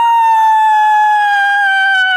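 A person's long, loud, high-pitched scream, held on one note that slides slowly lower.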